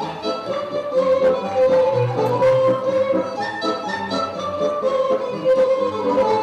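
Romanian folk dance music: a fiddle-led instrumental melody over a steady bass beat.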